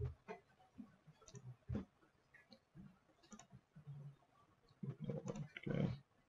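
Faint computer mouse clicks, scattered short ticks at irregular intervals.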